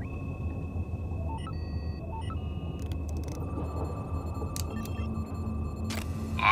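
Science-fiction electronic sound effects of an ancient playback console powering up and a tricorder amplifying its image. A low steady hum runs under a steady high electronic tone that comes on at once, with a couple of short beeps about a second and a half in and a few clicks later.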